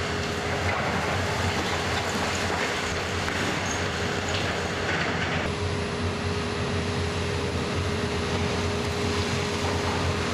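Hydraulic demolition excavator with a concrete-crusher attachment working: its diesel engine and hydraulics run steadily with a constant whine as the jaws crush concrete and debris falls.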